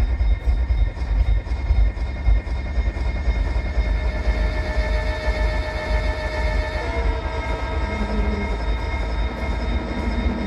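Electronically processed recording of an urban commuter train: a continuous low rumble with rail noise, and several steady high tones over it that shift lower about seven seconds in.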